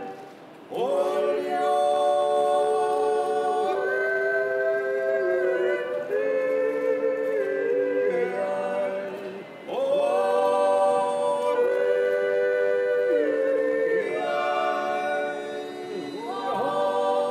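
Three voices, two men and a woman, singing a Bavarian–Salzburg yodel (Jodler) a cappella in close harmony. Held chords step from note to note, with short breaks between phrases just after the start and about halfway through.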